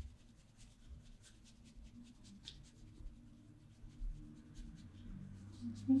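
A wet paintbrush brushing back and forth over sketchbook paper in a run of soft, quick strokes, several a second, dissolving and blending water-soluble wax pastel.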